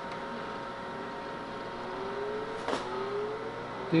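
HP 9825 desktop computer just switched on: a faint hum rising steadily in pitch as its cooling fan spins up, over a steady electronic whine, with a single click about two-thirds of the way through.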